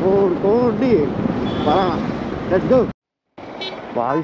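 A person talking, which cuts off abruptly about three seconds in into a moment of dead silence, followed by faint steady outdoor background noise.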